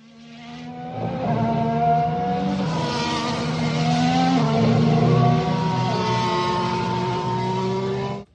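Racing car engines running at high revs, several pitches sounding together with small shifts, fading in over the first second.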